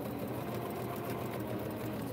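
Electric sewing machine running steadily, its needle stitching a scant seam through a pieced quilt block.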